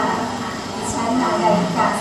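A woman speaking Thai, played over loudspeakers, with a steady rumbling background noise.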